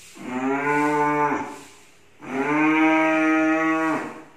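A boy imitating a cow with his voice: two long moos, the second starting about two seconds in and held a little longer.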